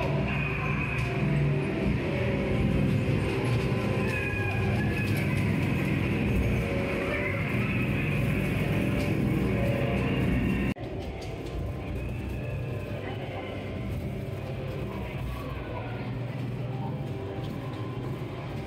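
Ghost train ride's spooky music and effects playing over the low rumble of the ride car running along its track. The sound drops abruptly to a quieter level a little over halfway through.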